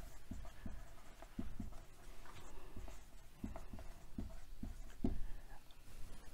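Marker pen writing on a whiteboard: a string of faint, short strokes.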